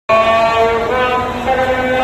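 Protest crowd chanting a slogan in unison, with drawn-out notes that step in pitch about every half second.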